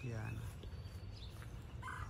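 Small birds chirping faintly in the background, a run of quick high chirps, over a steady low outdoor rumble.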